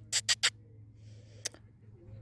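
Three quick squeaky kissing sounds made with the lips to call a dog, then one more about a second and a half in.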